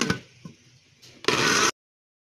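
A soft click, then about a second later an electric blender motor runs briefly, chopping onion in the jar, and cuts off abruptly after under half a second.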